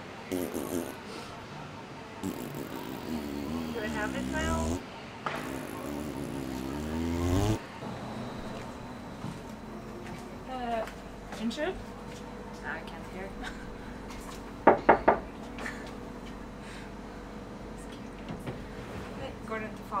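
Voices at a tram stop, cut off suddenly about seven seconds in, then the inside of a moving light-rail tram: a steady low hum with scattered small sounds and three short, loud tones in quick succession about fifteen seconds in.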